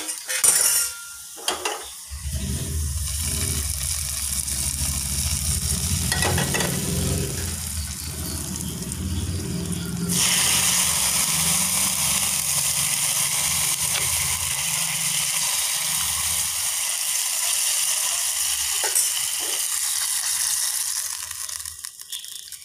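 Seasoning frying in oil in a small nonstick pan, sizzling, with a few knocks near the start. About ten seconds in, the sizzle turns suddenly louder and hissier and holds steady.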